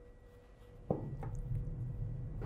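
Faint handling of fabric on a table. A sharp click about a second in and a lighter one just after, with a low steady hum coming in at the first click.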